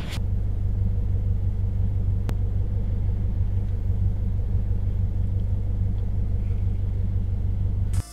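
Steady low rumble of a car running, heard from inside the cabin through the small built-in microphone of camera sunglasses, with one faint click about two seconds in.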